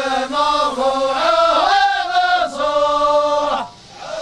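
A group of men chanting a sung verse together in one voice, with long held notes. The singing breaks off suddenly near the end.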